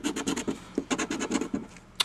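A coin scraping the coating off a paper scratch-off lottery ticket in quick, irregular strokes, thinning out near the end.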